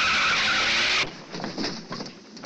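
Car tyres screeching in a hard skid, cutting off suddenly about a second in. Then a few clattering knocks as a wooden handcart tips over.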